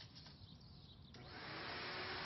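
A few faint soft clicks, then a steady hiss that swells in about a second in and holds level, with a faint low hum beneath it.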